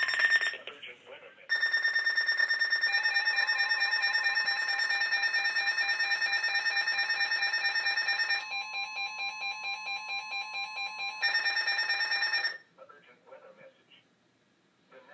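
Two NOAA weather alert radios, a Reecom R-1630 and an Eton ZoneGuard, sounding their alarms together for a severe thunderstorm warning: loud, rapidly pulsing electronic beeping with several pitches at once. About eight seconds in it drops quieter for a few seconds, then comes back at full level and cuts off suddenly near the end.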